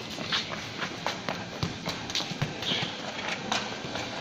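A child's running footsteps on tiled paving, a quick irregular patter of taps as he chases a soccer ball.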